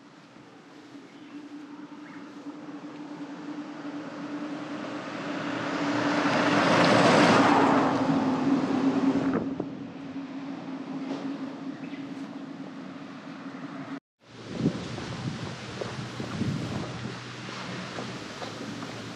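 A car passes on the road close by. Its engine and tyre noise swells to a loud peak about seven seconds in, then fades away, over a steady low hum.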